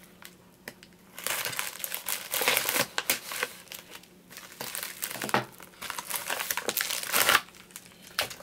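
Padded plastic mailer crinkling and rustling as it is handled and cut open, in several bursts after a quiet first second, the loudest just before the end.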